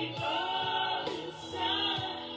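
Gospel choir music: a choir singing sustained chords over a bass line, with a steady beat of about two drum strokes a second.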